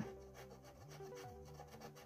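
A coin scraping the silver latex coating off a lottery scratch card: a faint, continuous rasp of metal on card.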